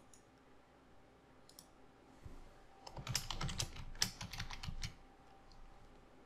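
Typing on a computer keyboard: a quick run of keystrokes lasting about two seconds in the middle, as a short label is typed in.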